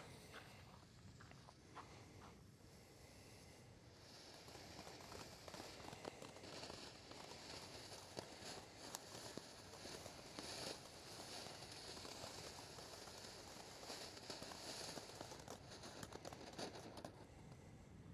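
Seven-inch consumer firework fountain burning, faint: a soft hiss of spraying sparks with scattered small crackles, swelling a few seconds in and fading out near the end.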